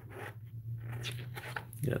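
Stiff paper pages of a ring-bound book being turned by hand: a sliding, rustling paper sound.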